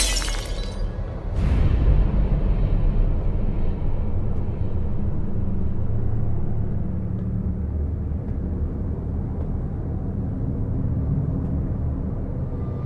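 Trailer score: a sharp impact hit at the start and a second hit about a second in, followed by a low, steady rumbling drone.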